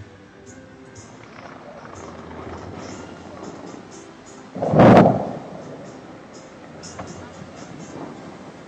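Bellagio fountain show: music and crowd voices in the background, and about five seconds in a single loud blast lasting under a second, the kind of sound the fountain's water jets make when they fire.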